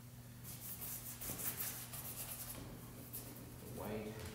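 Paintbrush scratching in a quick run of short strokes, over a low steady hum.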